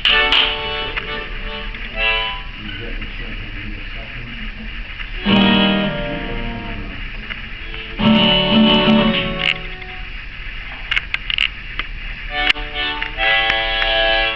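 Acoustic guitar playing a tune, with several short, held melodic phrases over it about every two to three seconds.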